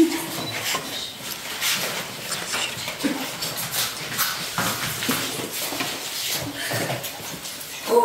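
Children imitating animal sounds with their voices, in short scattered cries.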